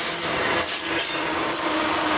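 Double-stack freight train passing close by: steel wheels on the rails with a hiss that pulses about every two-thirds of a second and a steady thin squeal.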